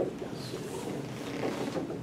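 Dry-erase marker writing on a whiteboard, soft scratching strokes over faint room murmur.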